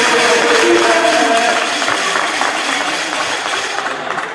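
Many voices of young players and spectators shouting and chattering, echoing in a sports hall, with a few drawn-out shouts in the first second and a half.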